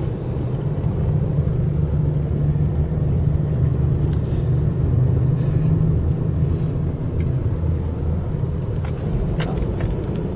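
Steady low engine and road rumble of a car heard from inside the cabin while driving slowly along a street. A few light clicks come near the end.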